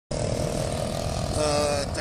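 A vehicle's engine running, heard as a steady rumble from inside the cabin.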